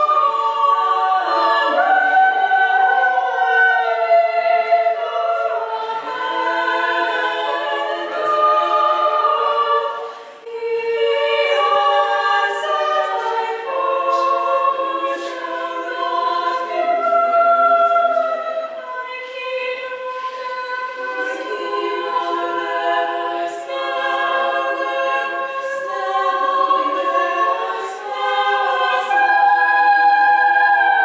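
A small group of women singing a cappella in harmony, holding sustained notes, with a brief pause between phrases about ten seconds in.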